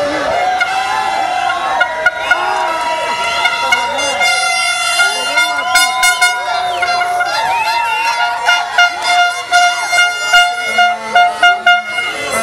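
Several plastic fan horns blowing long, steady, overlapping notes at different pitches, then short repeated blasts near the end, over voices shouting in a crowd.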